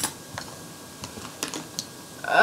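Light, irregular clicks and taps of small plastic makeup items, such as tubes, pencils and compacts, being handled and knocked together while someone feels blindly through them for the next one.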